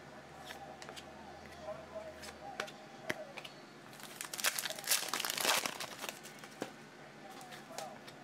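Hands handling trading cards, with small scattered clicks and flicks. About four seconds in comes a louder crinkling, tearing burst lasting around two seconds, from a foil card-pack wrapper.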